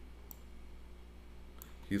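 A single faint computer-mouse click over a steady low hum, then a man's voice starts near the end.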